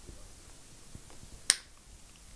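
A single short, sharp click about one and a half seconds in, against quiet room tone.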